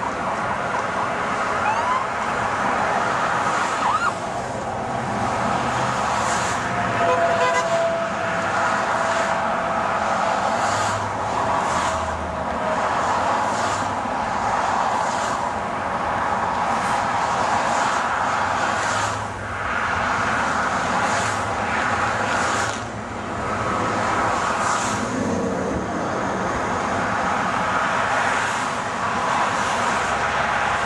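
Busy road traffic passing beneath, one vehicle after another in repeated swells of tyre and engine noise, with a brief steady tone about seven seconds in.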